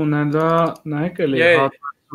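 A man talking, with faint computer keyboard typing under the speech in the first half.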